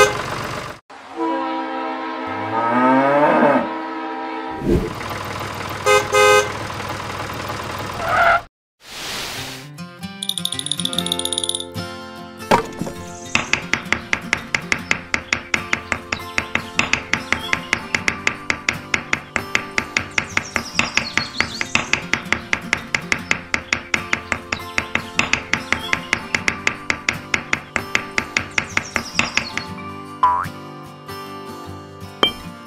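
Edited-in sound effects in the first eight seconds: gliding tones and a few short repeated toots. After a brief silence comes background music with a quick, steady beat.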